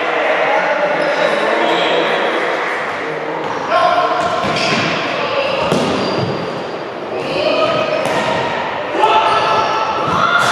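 An indoor futsal game echoing in a sports hall: players' voices calling and shouting, with several sharp kicks and thuds of the ball a few seconds apart.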